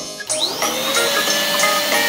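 Small electric balloon pump switched on: its motor whine rises as it spins up, then runs steadily as it blows up a balloon.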